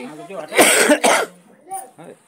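A man coughing: one harsh cough about half a second in, lasting about half a second, the loudest sound here, just after a few spoken words.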